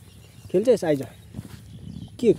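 Two short pitched voice sounds in quick succession, each rising and then falling in pitch, about half a second to a second in.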